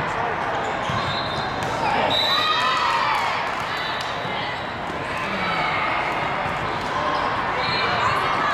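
Busy volleyball hall: a continuous din of players' and spectators' voices from many courts, with scattered thumps of volleyballs being struck and bouncing on the hardwood. A burst of shouting comes a couple of seconds in, as a rally ends.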